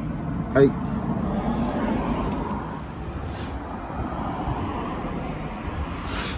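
Steady, even background rumble with no clear tone or rhythm; the motorcycle's engine is not running.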